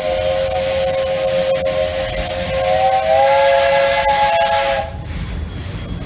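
Steam locomotive whistle of JNR Class 8620 No. 8630 blowing one long blast, a chord of several tones with steam hissing. It rises slightly in pitch about three seconds in and cuts off suddenly about five seconds in.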